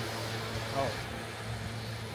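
A steady low mechanical hum under street background noise, with a short spoken 'oh' a little under a second in.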